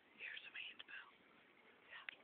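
Faint whispering close to the microphone, a few breathy phrases in the first second, with a small click.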